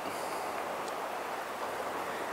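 Steady, even hiss of gentle surf on a calm sea, with no distinct splashes or knocks.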